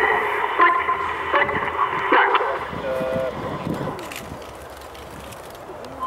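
Indistinct voices with no clear words, loudest in the first couple of seconds, then fading to a quieter background.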